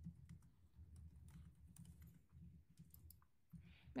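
Near silence: low room hum with a few faint, scattered clicks of a computer mouse and keyboard.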